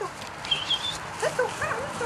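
A dog giving a high thin whine, then several short yips in quick succession.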